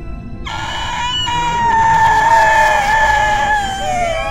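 A long, high scream of fright that starts suddenly about half a second in and is held for over three seconds, slowly falling in pitch.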